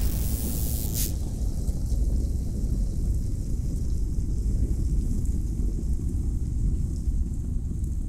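Deep, steady rumble from an animated logo sting's sound effects. A bright hiss on top cuts off about a second in, leaving the low rumble alone.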